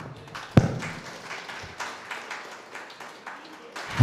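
Faint, irregular taps and clicks in a hall, with one sharper thump about half a second in.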